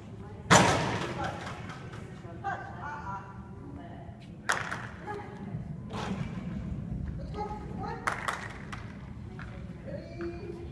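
A few sharp thuds that echo in a large hall. The loudest comes about half a second in, and smaller ones follow around four and a half, six and eight seconds.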